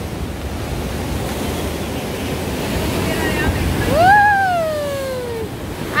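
Ocean waves surging and breaking against rocks, building to their loudest about four seconds in, where a person lets out one long exclamation that falls in pitch.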